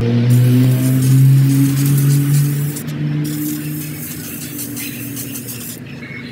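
Aerosol can of 3M 45 spray adhesive hissing in long bursts as a coat of glue goes onto aluminium foil, with a brief break about three seconds in; the hiss stops just before the end. A steady low hum runs underneath.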